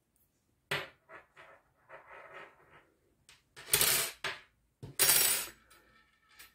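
Close-up handling noise from knitting: a knitting needle clicking and hands working pom-pom yarn with short light clicks and rustles. In the second half come two louder rustling scrapes, each about half a second long.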